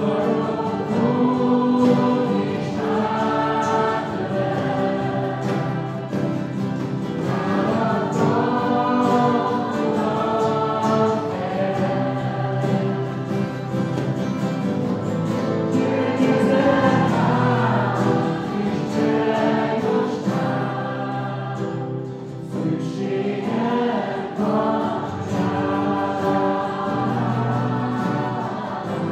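A group of young men and women singing a Hungarian worship song together, accompanied by several acoustic guitars.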